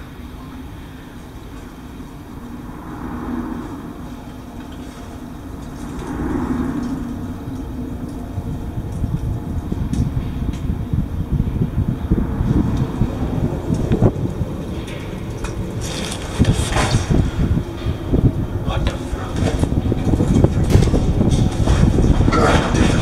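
Low rumble of road traffic carried through a concrete drainage pipe, with shoes scuffing and scraping on the concrete as someone crawls through it; the scuffing grows busier and louder in the second half.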